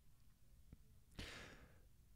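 A man breathes out once, a short sigh into a close microphone, a little over a second in.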